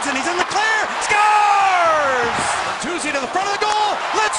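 Excited play-by-play commentary of an ice hockey goal, with long falling calls, over the noise of an arena crowd.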